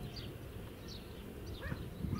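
Small birds chirping in short, quick high notes, over a low rumble of wind on the microphone. A short, louder call breaks in near the end.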